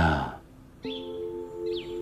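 A man's anguished cry ends in the first half second. About a second in, the background score enters with a steady held chord.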